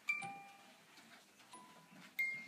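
A small bell-like chime rings once just after the start and fades over about half a second; a fainter single ringing tone follows about a second and a half in.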